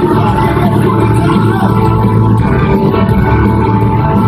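Live country band playing loud through a concert PA, recorded from the crowd on a phone, with a steady heavy bass line under the music.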